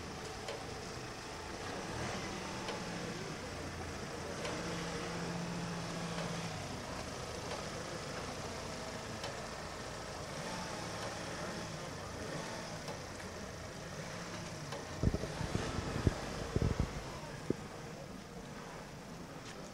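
Police van engine idling steadily, with a cluster of several loud low thumps about three seconds before the end.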